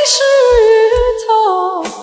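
A woman singing one long wordless high note into a microphone, the pitch stepping down in the second half and fading near the end. Two low drum beats about half a second apart come from the backing track.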